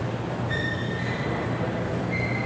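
Steady low hum and general room noise of a large table tennis hall, with a brief high squeak about half a second in that fades within about a second.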